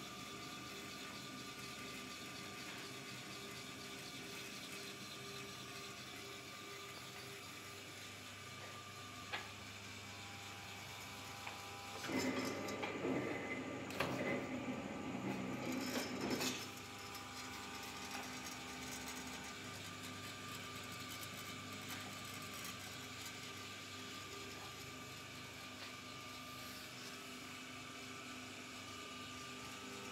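Electric motor of a paper cutting machine running steadily with a low mains hum. About twelve seconds in, a louder, noisier stretch of clattering lasts some four seconds.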